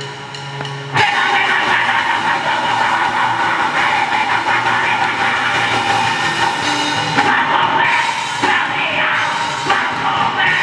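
Live rock band playing loud: electric guitar and a full drum kit come in together about a second in and keep going as a dense wall of sound, after a low held note in the first second.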